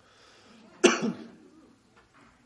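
A person coughs once, loudly, about a second in.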